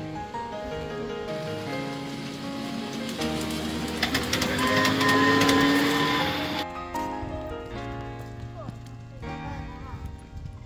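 Background music: a song with steady held notes, swelling into a louder, noisier passage in the middle that cuts off abruptly about two-thirds of the way through.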